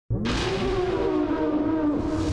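Whooshing title-sequence sound effect that starts suddenly, with a low rumble under it and a tone that glides up and then eases slightly lower.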